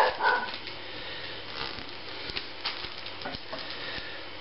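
Small plastic bag holding hop hash rustling and crinkling softly as hands press it flat on a wooden table, with scattered light ticks. A short vocal sound comes right at the start.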